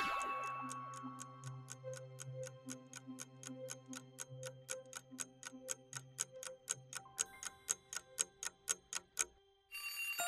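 A clock-style countdown timer ticking about four times a second and growing louder, over low sustained background music, then stopping just before the end. It opens with a loud sound-effect burst that fades over the first second or two.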